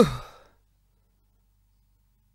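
A single voiced sigh, "haa", falling in pitch and fading within about half a second, followed by near silence.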